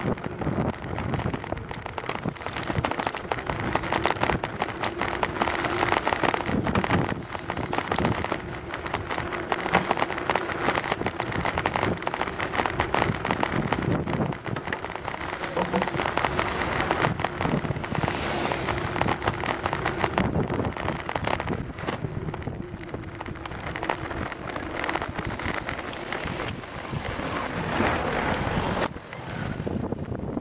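Bicycle rolling over a wooden plank deck, heard from a handlebar-mounted camera: a dense, continuous rattling and ticking of the bike and mount, with wind on the microphone.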